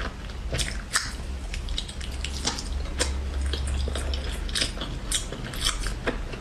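Biting and chewing a soft red jelly ball: irregular wet mouth clicks and squelches, several a second.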